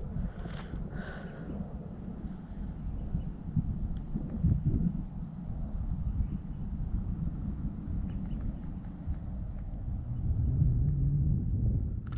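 Wind buffeting the microphone on an exposed mountain lookout: a steady, uneven low rumble that gets stronger near the end.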